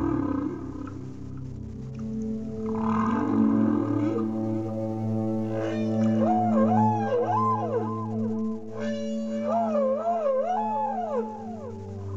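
Whale song over a steady ambient music drone: rising moans near the start and about three seconds in, then two runs of wavering, up-and-down calls, from about six and nine seconds in.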